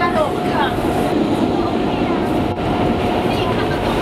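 Subway train running, heard from inside the car: a steady loud rumble with a constant high whine, with children's voices over it.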